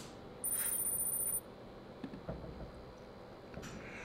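A short electronic sound effect from the Kahoot quiz game as its scoreboard comes up: a bright, high-pitched tone that starts about half a second in, is held for about a second and stops abruptly. A faint click comes near the end.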